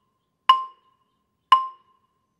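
Two single notes on the same rosewood keyboard bar struck with a yarn mallet about a second apart, each ringing out only briefly. They are played as a downstroke, which the player says does not give a nice full tone.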